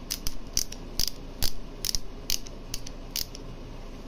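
Half-inch ratchet adapter on a breaker bar clicking as its head is turned by hand: sharp pawl clicks at an uneven two or three a second.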